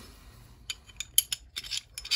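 Small steel parts of a field-stripped Llama Especial .380 pistol clicking and clinking together as they are handled, a run of sharp light metal ticks in the second half.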